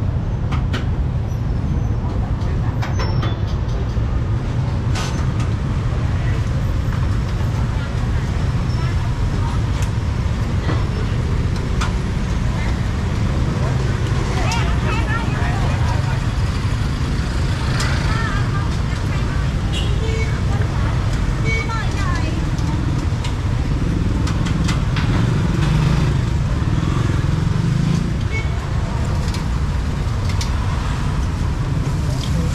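Busy street-market ambience: a steady rumble of road traffic, including passing motorbikes, under indistinct voices of people talking, clearest around the middle, with scattered small clicks and clatter.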